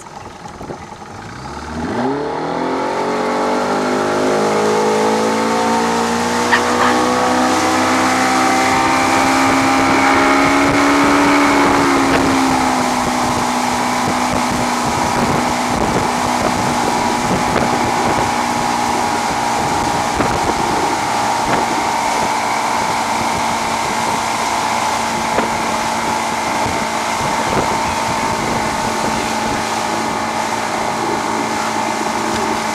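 Motorboat engine opening up to tow an inflatable ring: its pitch climbs steadily for about ten seconds, then holds steady at speed, with the rush of water and knocks of the hull on the waves.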